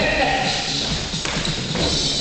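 Workout music for a step-aerobics class with a voice over it, and feet stepping on plastic aerobic step boards.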